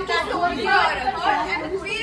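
Several people talking over one another in a heated argument: overlapping, unclear speech.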